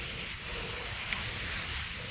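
Garden hose spray nozzle running, a steady hiss of water spraying onto wet soil and grass plugs.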